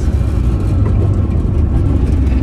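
Engine and road noise inside the cabin of a 2011 Snyder ST600-C three-wheeler under way, its rear-mounted 600 cc twin motorcycle engine running with a steady low drone.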